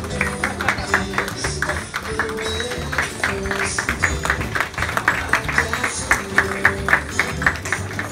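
Music playing, with a crowd clapping along in a steady rhythm of about four claps a second that grows stronger in the second half.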